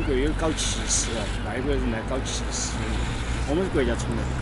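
A man speaking Chinese in conversation, in short phrases, over a steady low rumble.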